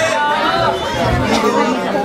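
A man talking into a handheld microphone over a PA system, with audience chatter behind.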